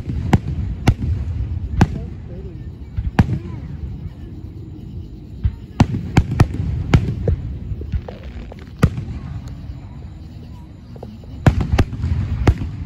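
Aerial firework shells bursting in a display: about a dozen sharp bangs at irregular intervals, bunched around six seconds in and again near the end, over a steady low rumble and indistinct crowd voices.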